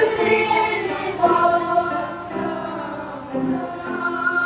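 Children's choir singing, holding long notes.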